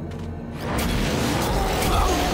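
Cartoon sound effect of a hand-held launcher firing and its blast striking the ground: a sudden rushing burst of noise about half a second in that stays loud, over background music.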